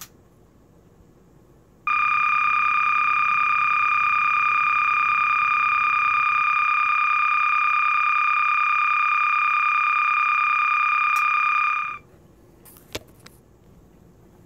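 System Sensor MAEH24MC fire alarm horn sounding its 'bell' tone, a rapidly interrupted high-pitched tone, loud and steady. It starts about two seconds in and cuts off sharply after about ten seconds.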